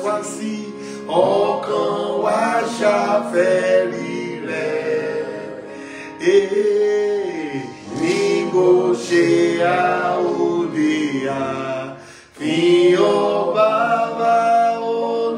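A man singing a gospel hymn chorus solo, holding long notes that bend in pitch, with a brief pause for breath near the end.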